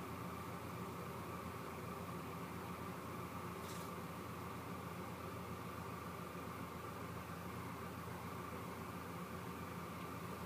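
Steady faint hiss with a low hum underneath: room tone with the microphone's noise. A faint, brief high rustle shows a little under four seconds in.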